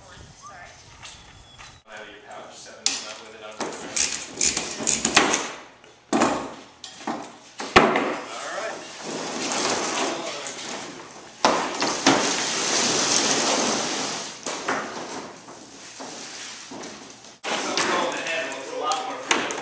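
Coiled plastic ground-loop tubing being handled and dragged across a plywood table: irregular knocks and scrapes, with a few seconds of steadier scraping past the middle.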